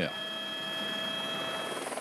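Helicopter in flight heard from inside its cabin: a steady whine of several high tones over the engine and rotor noise.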